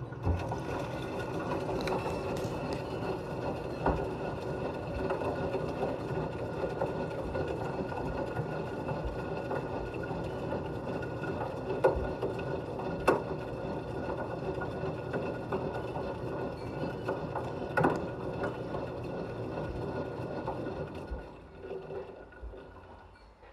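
Washing machine drum turning through a wash, heard from inside the drum: a steady motor hum with water and suds sloshing, and a few sharp knocks against the drum. It starts suddenly and fades out near the end.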